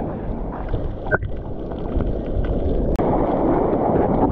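Water rushing and sloshing over a GoPro at water level as a bodyboarder paddles and kicks with fins, a dense muffled wash. About three seconds in the sound drops out for an instant, then comes back as livelier splashing at the surface.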